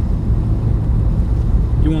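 Steady, loud rumble of a car driving on a highway, heard from inside the cabin: engine and tyre noise. A man's voice starts just at the end.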